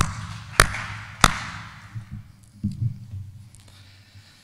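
A man clapping his hands three times, about two-thirds of a second apart, each clap echoing in a large auditorium.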